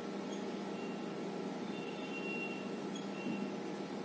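Faint squeaks of a marker pen writing on a whiteboard, in several short strokes, over a steady electrical room hum.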